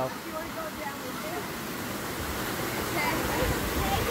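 Creek water rushing steadily down a sloping rock slab, a natural water slide. Faint distant voices, with a low rumble in the second half.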